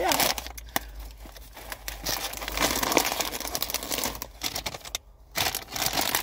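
A bag of Fritos corn chips and a plastic shopping bag crinkling as they are handled and packed, with a brief lull about five seconds in.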